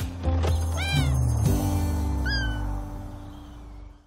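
A kitten meows twice, in short high calls that rise and fall, about a second in and again a little after two seconds. Soft background music runs underneath and fades out near the end.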